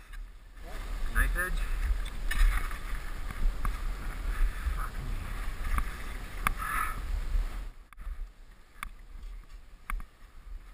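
Wind buffeting a GoPro's microphone in gusts, a loud low rumble that sets in about half a second in and dies down near the eight-second mark, with a few sharp clicks near the end.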